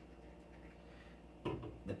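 Quiet room, then about one and a half seconds in, a short knock of an aluminium drink can set down on the table.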